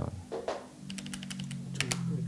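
Plastic keys of a desktop electronic calculator clicking as a finger presses them in quick succession, in small groups of taps.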